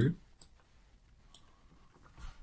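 Two computer mouse clicks, about a second apart.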